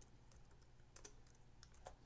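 A few faint computer keyboard keystrokes, scattered short taps over a low steady hum.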